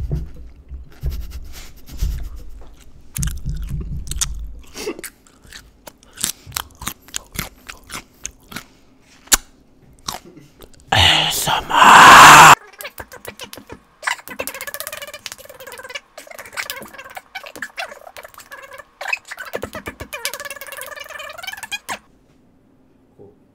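Close-up crunching and chewing of raw baby carrots: many irregular sharp crunches. About eleven seconds in comes a very loud rasping burst of noise lasting a second and a half. It is followed by a long, wavering vocal sound, like humming, near the end.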